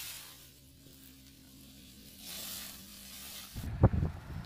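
Dry fallen leaves rustling faintly as a handful is tossed into the air. Near the end there is a short low rumble and one sharp click, the loudest sound.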